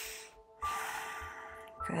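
A woman's deep, audible breaths while she holds a yoga bridge pose: one breath trails off about a third of a second in, and after a short pause another runs to near the end. Soft background music with held tones plays underneath.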